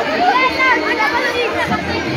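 Crowd chatter: many people talking at once, their overlapping voices forming an even hubbub.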